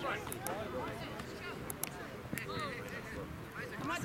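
Voices of players and spectators calling out across an outdoor soccer field, with a few short sharp knocks among them.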